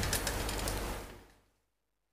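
A quick run of light taps that fades out after about a second, then the sound drops to dead silence.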